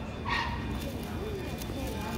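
Background voices of people nearby over low street noise, with one short louder call about a third of a second in.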